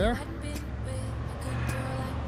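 Steady low rumble of a motor vehicle running on the road, with a faint steady higher tone over it.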